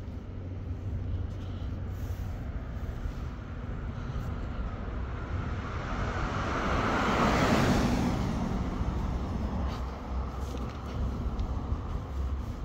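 A vehicle driving past close by, its tyre and engine noise swelling to a peak about seven to eight seconds in and then fading, over a steady low street-traffic rumble.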